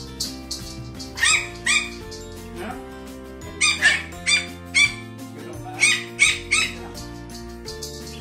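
Pomeranian puppy yapping: about nine short, high barks in three quick bursts of two, four and three, over background music.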